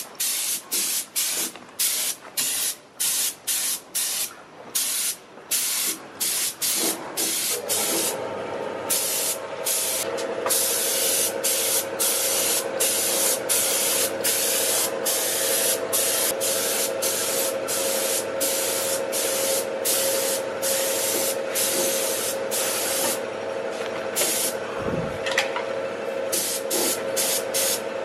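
Compressed-air paint spray gun hissing in short bursts, about two a second, as the trigger is pulled and let go while it lays on metal-flake paint. From about eight seconds in, the bursts run longer and a steady hum sounds underneath.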